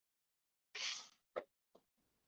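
Near silence broken by a short breathy hiss about a second in, followed by two small faint clicks: a speaker's breath and mouth sounds picked up by a headset microphone.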